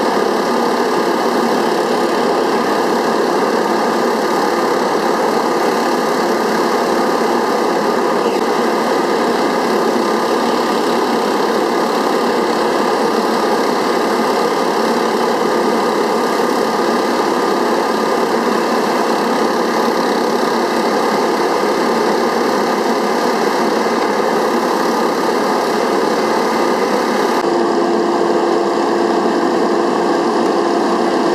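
A small engine running steadily at constant speed. Near the end a steady hum joins it.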